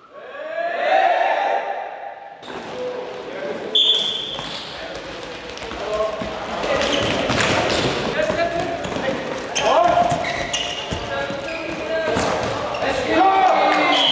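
Floorball game sounds in an echoing sports hall. Players shout and call out over repeated sharp clacks and knocks of sticks and the plastic ball. A high whistle blows once for under a second about four seconds in, and again right at the end.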